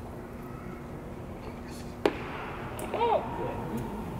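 A pitched baseball smacking into the catcher's mitt: one sharp, loud pop about halfway through, followed about a second later by a short shouted call.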